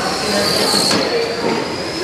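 Brushless electric motors of 21.5-turn RC oval racing trucks whining as the cars pass close by on a carpet track. The high whine swells to a peak just under a second in and then drops away.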